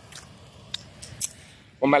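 Light footsteps, about two a second, over faint outdoor background noise.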